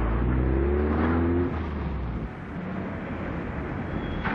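Car engine accelerating, its pitch rising over the first second and a half. It then eases off to a quieter, lower running sound as the car drives on.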